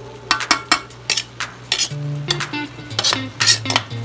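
Metal spoon scraping and clinking against a metal wok while stirring a wet mixture of diced pork offal, in quick irregular strokes.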